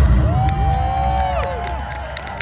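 Outdoor audience cheering and whooping as a dance song ends, with the song's final deep bass note dying away at the start.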